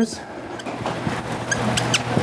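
Dry-erase marker writing on a whiteboard: faint rubbing strokes with a short squeak about one and a half seconds in, over a low steady hum.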